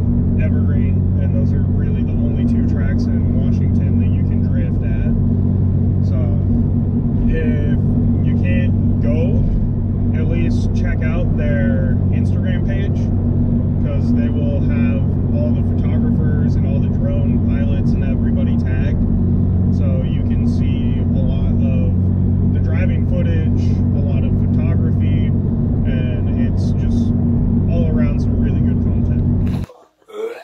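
Steady low drone of a Toyota GR86 cruising at highway speed, heard from inside the cabin, with a man talking over it throughout. The sound cuts off abruptly near the end.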